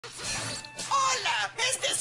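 Cartoon soundtrack: a short crackling static effect as a video monitor switches on, then a character's voice over background music from about a second in.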